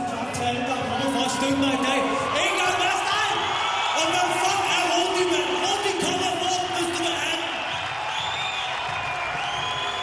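A man shouting into a handheld microphone in the ring, his voice amplified, with long drawn-out words.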